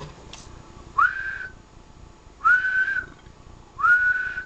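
A person whistling three short notes into a transceiver microphone to drive its single-sideband output for a power test. Each note slides up quickly and is then held steady for about half a second.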